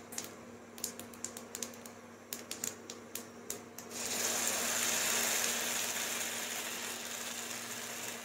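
Sesame seeds crackling and popping in hot oil in a nonstick pan. About four seconds in, a steady sizzle starts suddenly as spinach and moong dal chilla batter hits the hot pan.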